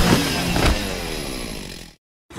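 Cartoon explosion sound effect from a fiery blast: a rough rumbling roar, loudest at first, with a short extra hit under a second in, fading away until it cuts off just before the end.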